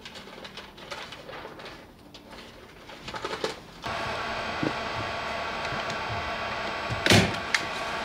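Handling noise and light clicks at first, then about four seconds in a small electric motor in a handheld power tool starts and runs at a steady pitch, a whine with many overtones. A loud knock or rustle stands out about three seconds later while the motor keeps running.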